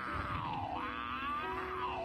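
A man's drawn-out anguished cry from the anime soundtrack as a vampire crushes and bites him; the cry dips in pitch, rises again and falls away near the end.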